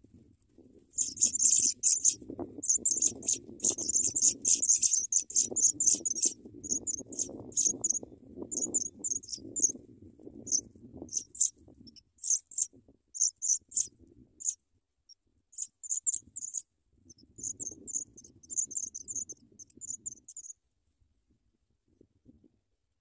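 African pipit nestlings begging: rapid runs of thin, very high-pitched calls in irregular bursts, over soft rustling in the grass nest. The calling stops shortly before the end.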